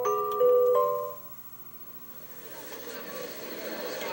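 Story-app music of a few held, bell-like mallet-percussion notes, stopping about a second in. After a short lull, the murmur of a crowd fades in as the next page's background sound.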